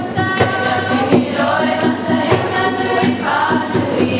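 A large group of voices singing a Māori waiata in unison, on long held notes. Sharp percussive hits, claps or stamps, sound through the singing.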